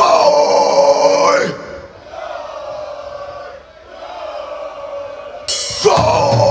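A male singer's long shout of 'Ho!' through the PA, falling in pitch as it ends, followed by quieter crowd noise. Near the end the band comes crashing in with drums and a cymbal.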